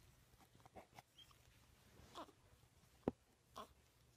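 Quiet, faint grunts and short coos from young infants, with a single sharp click about three seconds in.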